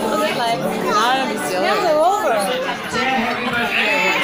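Several voices talking and calling out over one another: lively chatter at a table in a busy room.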